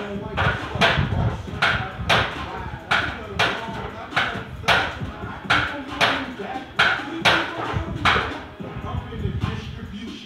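A kipping set of toes-to-bar on a pull-up rig: sharp, hard breaths and knocks from the bar and rig in a steady rhythm, about two a second, over hip-hop music.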